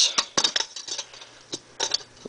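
A crinkled metal foil band around a small metal fuel can rustling and clicking as fingers pull it loose, an uneven scatter of light metallic clicks.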